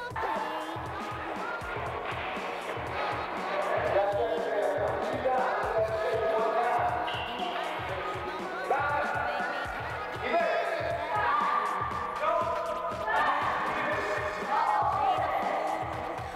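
Music with singing voices holding and sliding between notes over a low pulsing accompaniment.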